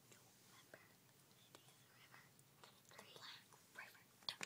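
Near silence with faint whispering and a few soft clicks.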